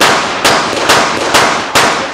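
Pistol shots fired at an even pace, five in about two seconds, each a sharp crack with a short ring after it.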